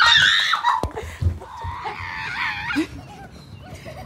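Children shrieking and laughing in high-pitched excited bursts, loudest at the start, with a dull knock a little under a second in.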